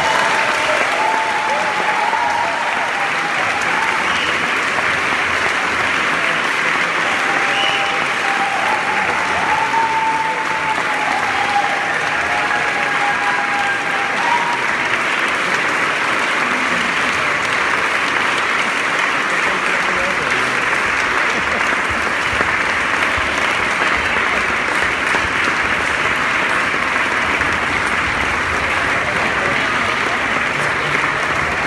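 Audience applauding, a dense and steady clapping throughout, with a few voices calling out over it in the first half.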